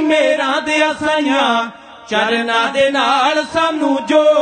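Dhadi ensemble music: male voices holding a wavering, unworded melodic line over sarangi and light dhadd drum strokes. It breaks off briefly about two seconds in, then resumes.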